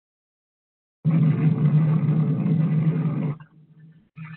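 Soundtrack of archival nuclear test film: a loud, low blast sound that cuts in suddenly about a second in and drops away sharply a little after three seconds, leaving a fainter low sound, all heard through thin, band-limited webinar audio.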